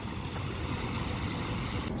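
Steady outdoor background noise: an even low rumble with a faint hiss above it, with no distinct events.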